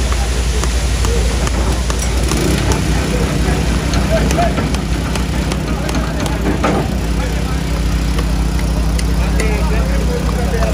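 Excavator's diesel engine running steadily at a low hum as its bucket tips wet concrete into rebar formwork, with many voices chattering over it.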